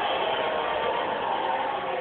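Steady, muffled crowd din from an MMA broadcast playing through a Toshiba television's speaker, thin-sounding as picked up off the set by a phone.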